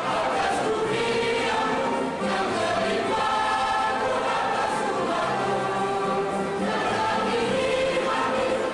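Mixed-voice choir of men and women singing in parts, holding long notes that change about every second.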